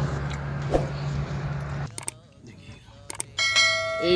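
Steady vehicle cabin rumble while driving, cut off suddenly about two seconds in. After a quieter stretch with a few clicks, a ringing bell chime starts near the end, the sound effect of a subscribe-button animation.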